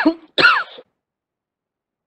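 A person coughing twice in quick succession, the two coughs about half a second apart.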